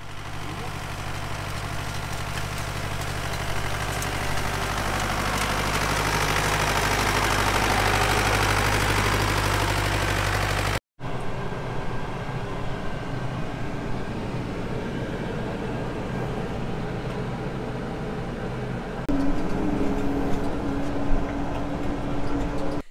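An old tractor's diesel engine running steadily as it works a wheel rake, growing louder to about eight seconds in, then cut off abruptly. After the cut, engines are heard from inside a telehandler's cab, with a second, higher engine note joining near the end.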